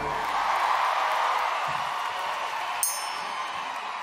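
Studio audience applause with some cheering, slowly fading, just after a brass band stops playing. A brief high ringing chime sounds about three seconds in.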